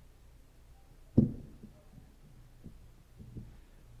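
Handheld microphone handling noise: one sharp low thump about a second in, then two much fainter thumps, over a faint low hum.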